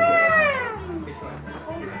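A young child's high, drawn-out wail, rising slightly and then falling in pitch over about a second, with party chatter behind it.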